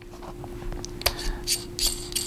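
Hands unscrewing the aluminium battery cap of an Orcatorch T20 flashlight: light scraping with small clicks and one sharper click about a second in.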